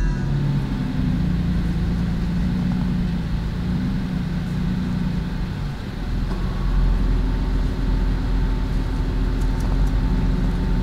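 Jeep engine running at low speed as the vehicle crawls along a rough forest trail, a steady low rumble. From about six seconds in the rumble turns deeper and somewhat louder.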